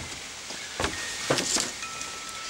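Footsteps on a wooden deck: a few soft knocks as someone walks away. Near the end, metal tube wind chimes ring faintly with two held tones.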